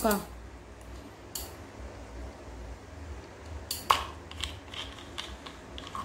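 Small clicks and handling noises from an Olympic CX 1000 spinning fishing reel worked by hand as its spool is taken off. There is one sharper click about four seconds in, followed by a few softer ones.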